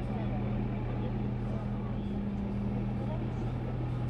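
A vehicle engine idling steadily, a low, even hum with no revving, under outdoor background noise.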